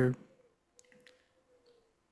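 A man's spoken word trails off, then a quiet pause with a few faint clicks about a second in and a faint steady tone underneath.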